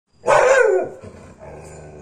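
Pit bull barking once: a single loud bark of about half a second with a falling pitch, near the start, followed by a much quieter low steady sound.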